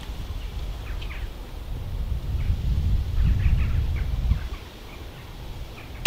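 Gusting wind buffeting the microphone, heaviest about three to four seconds in, with faint bird calls in the background.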